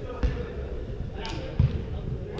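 Two dull thuds of a football being kicked, about a quarter-second in and again past halfway, echoing in a large indoor hall.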